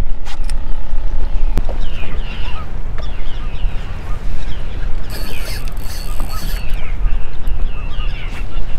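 A flock of birds feeding on bait, giving many short, repeated calls from about two seconds in until near the end, over a steady low rumble.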